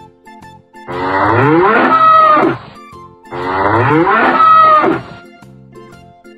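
A bull mooing twice. Each moo is a long call of about two seconds that rises in pitch, with a short gap between them.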